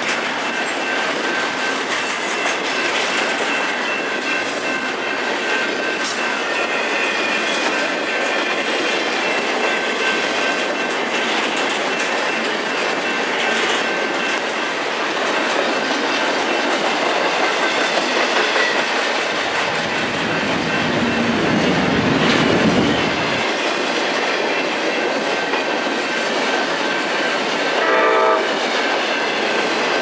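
Freight cars rolling past close by: a steady rumble of steel wheels with clicking over rail joints and thin, steady wheel squeal. A short train horn blast sounds near the end.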